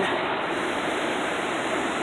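Steady rushing water of Minnehaha Falls, an even noise with no breaks.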